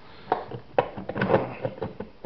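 A series of sharp, irregular clicks and knocks from handling a 1954 Northern Electric 354 rotary wall telephone, most closely bunched in the second half.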